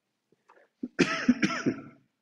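A man coughing, a short run of several coughs starting a little under a second in.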